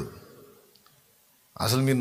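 A man preaching in Telugu into a microphone: his voice trails off, then a pause of about a second and a half with a couple of faint clicks, and he starts speaking again near the end.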